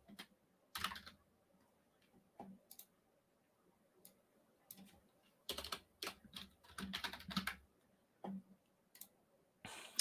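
Faint computer keyboard typing in short, irregular bursts of keystrokes, busiest a little past halfway through.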